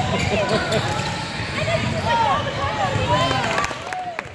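Basketball shoes squeaking again and again on a hardwood gym floor as players move and stop, in many short rising-and-falling chirps.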